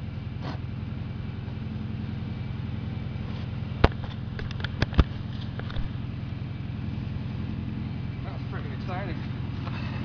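A steady low engine drone runs throughout, with a few sharp clicks of a shovel striking into the soil a little under four seconds in and again around five seconds.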